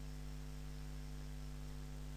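Steady low electrical hum, a mains-type hum with several constant tones and nothing else sounding.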